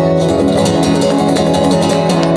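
Solo acoustic guitar strumming a blues figure with no singing: the closing bars of the song after its last sung line.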